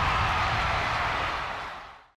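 A noisy whoosh-and-rumble sound effect accompanying the league logo outro, dying away and fading out in the last half second.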